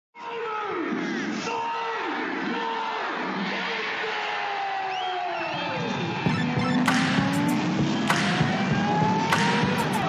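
Race cars passing at speed one after another, about a second apart, each engine note dropping in pitch as it goes by. About six seconds in, music with sharp drum hits comes in over an engine note that climbs in pitch.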